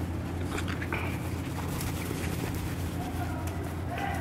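Steady low hum of background noise, with a few faint short sounds about half a second to a second in.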